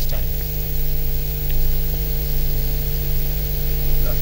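Steady electrical hum with hiss on a live remote video link while no voice comes through; the connection is breaking up.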